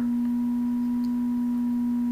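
A steady, unchanging hum at one low pitch, with a fainter higher tone above it.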